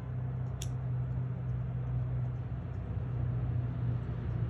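Steady low mechanical hum, with one faint sharp click about half a second in.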